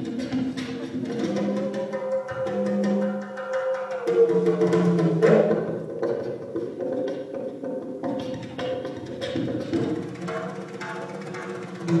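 Live instrumental music from an oud, electric bass and percussion trio: the oud carries the melody over long held bass notes, with light percussion taps running throughout.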